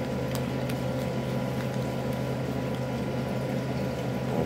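A steady low hum, with a few faint clicks of a plastic snack tray as fingers pry a stuck slice of cheese out of its compartment.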